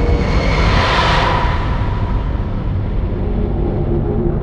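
Logo-intro sound effect: a deep, steady rumble with a rushing whoosh that swells about a second in and then fades back.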